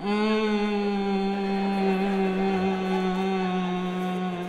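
A man singing one long held note into a microphone, starting abruptly and staying level in pitch.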